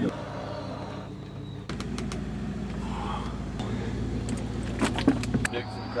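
Fishing charter boat's engine running with a steady low hum, with a few light clicks and knocks.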